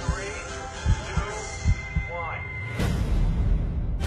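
A slow heartbeat, deep thumps in lub-dub pairs about a second apart, over a low hum with faint voices. Near three seconds in, loud band music starts with a heavy bass.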